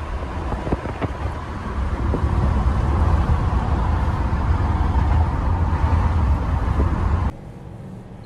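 Car cabin road noise: a steady low rumble of the moving car, growing louder about two seconds in, with a few faint knocks early on. It drops off suddenly near the end.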